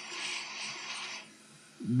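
Hot air gun blowing on a laptop heatsink to heat it: a steady airy hiss that cuts off a little after a second in.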